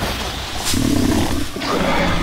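Monster roaring: a loud, rough, growling creature roar from a film's sound design, with a sharp hit about a second in.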